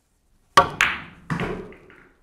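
Pool cue tip striking low on the cue ball for a draw shot, then the sharp click of the cue ball hitting the nine ball a quarter second later. A duller knock follows about half a second after that as the balls carry on, fading out near the end.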